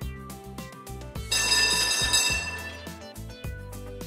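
Cheerful background music, with a tram bell ringing loudly for just over a second in the middle as the tram pulls into a stop.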